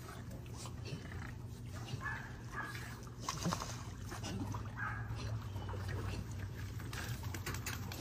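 Dogs whining faintly while held on a stay, a few short whines scattered through the middle, over a low steady hum.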